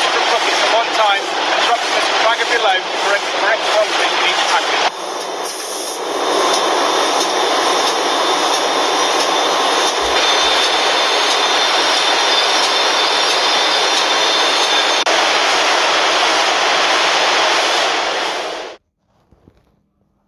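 Steady, loud din of a crisp-packing line: a bagging machine filling and sealing packets and the conveyor carrying them, with a thin high tone running through it. It cuts off suddenly near the end.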